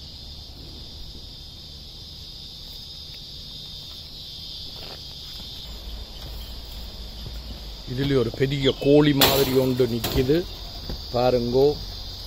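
Steady high-pitched insect chorus running throughout. From about eight seconds in, a man's voice speaks loudly over it in short bursts.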